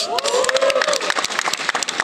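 Audience applauding, with many distinct sharp claps and a voice cheering in the first second.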